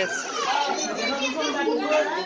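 Excited children's voices: high-pitched squeals and overlapping chatter, with one squeal falling in pitch near the start.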